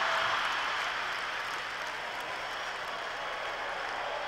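Large live audience applauding and laughing. Loudest at the start, it slowly dies away.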